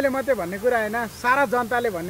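Only speech: a man talking animatedly, his voice rising and falling, with no other sound standing out.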